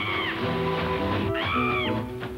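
Orchestral title theme music. Over it, an arching, cry-like call rises and falls over about half a second, once at the start and again about a second and a half in.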